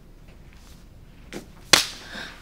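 A single sharp open-hand slap across a face, near the end, preceded by a fainter small click.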